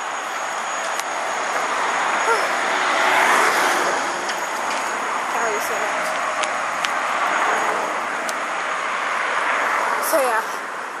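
Road traffic noise: a vehicle passing that swells about three seconds in and fades, over a steady traffic hum.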